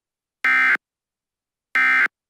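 Emergency Alert System end-of-message code: two short, buzzy bursts of SAME digital data tones, each about a third of a second long and a little over a second apart, signalling the end of the alert.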